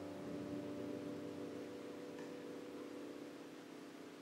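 Soft sustained notes from a piano, guitar and reed trio ringing on and slowly fading as a quiet improvised piece dies away, with a faint click about two seconds in.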